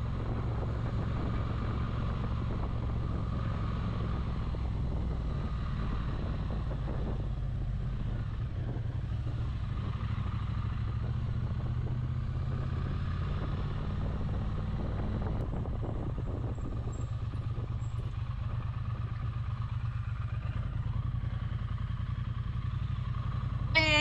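Triumph Speed Twin 900's parallel-twin engine running at low, steady revs, with road and wind noise from the moving motorcycle.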